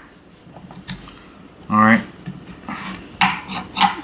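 Metal parts of a disassembled centrifugal wet clutch clinking and scraping as a clutch shoe is handled against the clutch assembly. There are a few light clicks early on and sharper clinks near the end.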